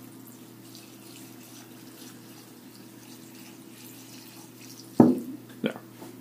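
Denatured alcohol poured from a can onto dry wood pellets in a plastic cup, a faint steady trickle. About five seconds in, a sharp thump, then a lighter knock, as the can is set down.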